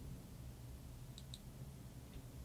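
Two faint, quick clicks in close succession about a second in, over a low steady room hum.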